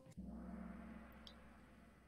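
Kahoot quiz game's answer-reveal sound effect: the question music stops and a single gong-like tone sounds, fading away over about two seconds.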